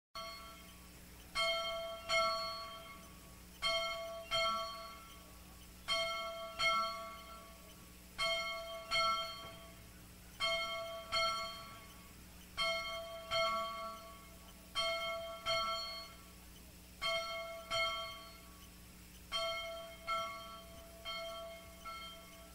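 Bell chimes ringing in pairs of strikes, each ringing out and fading. The pairs repeat evenly, about every two and a quarter seconds.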